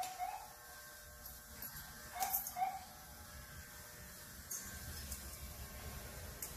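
Barber's tools being handled on a counter: a short clatter about two seconds in and a faint click near the end, over quiet room sound.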